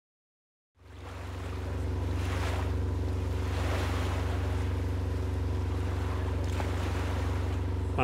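Boat motor running steadily under way: a low, even engine hum, with water rushing and wind over it. It fades in just under a second in.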